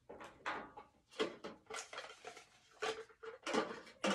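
Hollow plastic clicks and clatter of plastic Easter egg halves and plastic cups being handled, a dozen or so short knocks and rattles.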